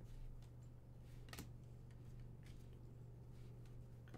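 Near silence: a few faint clicks of trading cards being flicked through by hand, one sharper click about a second and a half in, over a steady low hum.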